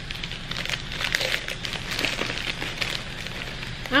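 Crinkly gift-basket wrapping being handled, giving irregular crackles and rustles.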